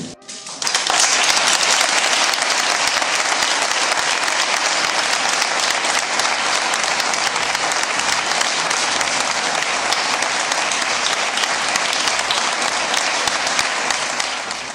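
An audience applauding, starting about half a second in and holding steady, easing off at the very end.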